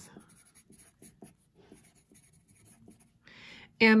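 Wooden pencil writing on paper: faint, irregular scratching of the graphite tip as a word is written out in short strokes.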